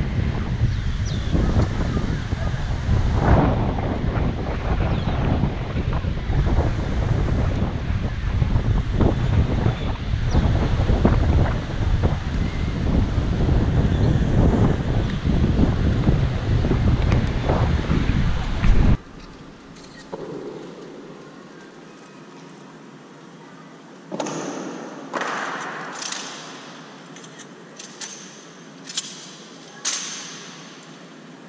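Wind buffeting the camera microphone in a heavy, low rumble. About two-thirds of the way through it cuts off suddenly to a much quieter, echoing hall, where a few sharp knocks ring out, each dying away slowly.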